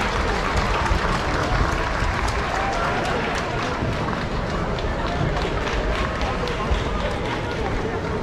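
Arena crowd hubbub: many voices blending into a steady murmur, with scattered hand claps.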